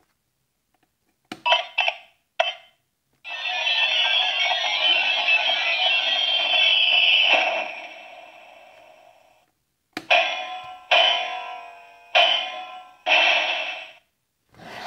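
Electronic lights-and-sounds effects from a Minions Mega Transformation Chamber toy's small speaker. A few short blips come first, then one long musical transformation effect that fades away, then four short sound clips near the end.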